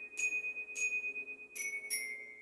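Glockenspiels struck with mallets, playing a slow tune: four bright, ringing notes about half a second apart, each sustaining into the next, the pitch stepping down over the last two.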